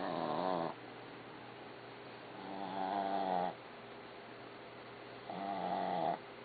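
A sleeping dog snoring: three snores, one about every two and a half to three seconds, each a low pitched drone about a second long that swells and then cuts off sharply.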